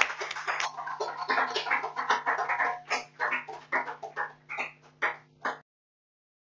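Scattered clapping from a small group of people, dense at first and thinning out, over a low electrical hum. The sound cuts off suddenly near the end.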